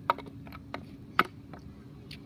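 Two sharp knocks about a second apart, with a fainter one between them, from a wooden hockey stick and plastic street-hockey ball being handled on a concrete walk.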